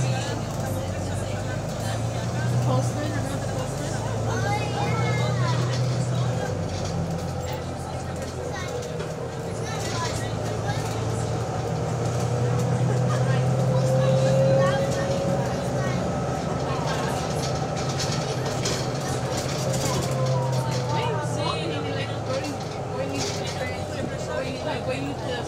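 Bus engine and drivetrain running under way, heard from inside the passenger saloon: a steady engine hum that swells and eases twice, with a whine that rises slowly in pitch and then falls away.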